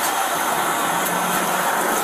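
A steady rushing hiss with a faint low hum underneath, even in level throughout.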